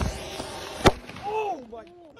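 Fireworks going off on the ground: a hissing fizz, then one sharp firecracker bang a little under a second in. Shortly after, a person lets out a brief cry.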